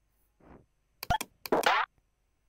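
Tux Paint's cartoon sound effects as a shape is picked and drawn: a soft blip, a couple of quick clicks about a second in, then a short sweeping sound effect, the loudest of them.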